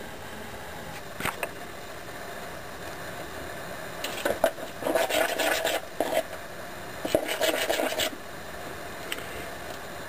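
Scraping and rubbing as a stovetop waffle iron is handled on a gas stove's grate and a bowl of batter is worked. The sound comes in two spells, about four and seven seconds in, after a brief scrape near the start, over a steady hiss.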